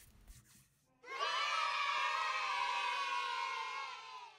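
A crowd cheering and shouting in one long swell that starts about a second in and fades out at the end.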